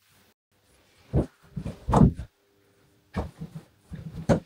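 A person lying down onto a sofa: a few short, soft thumps and rustles of fabric and cushions as the body settles onto them.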